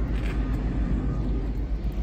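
Wind rumbling on a handheld phone microphone outdoors: a steady low rumble that flutters in loudness.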